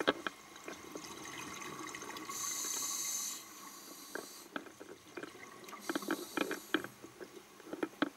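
Underwater sound inside a shark cage: a scuba diver's regulator breathing, in two hissing bursts of bubbles about a second long each, with scattered clicks and knocks through the water.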